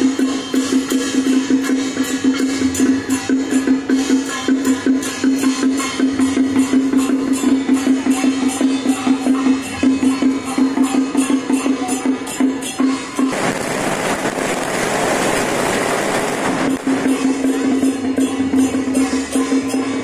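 Temple procession music with a fast, steady percussion beat. About two-thirds of the way through, a dense hissing rush covers the music for about three seconds, and then the beat carries on.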